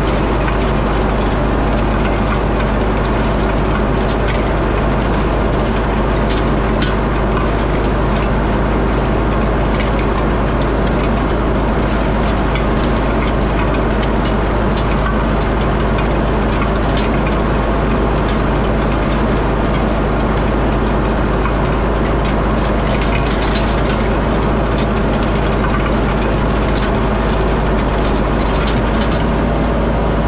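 Tractor engine running steadily under load as it pulls a Samco corn planter laying plastic mulch, with scattered light clicks and knocks from the planter.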